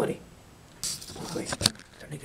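Handling noise from a camera being grabbed and moved: a short scuffling rustle, then a few sharp clicks, the last and loudest one coming late.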